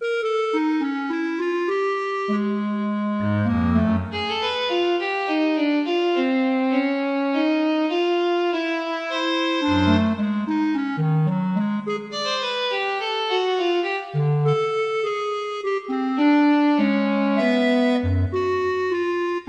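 Instrumental background music that starts suddenly: a flowing melody of sustained notes over lower bass notes.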